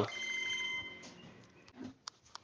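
A faint, steady high-pitched tone with a low hum under it, lasting about a second before fading to near silence.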